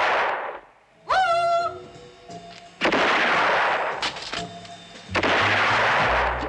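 Loud gunfire bursts on a film soundtrack, each with a long echoing tail: one fading out at the start, then fresh bursts about three and five seconds in. Between them music plays, with a note sliding up and holding about a second in.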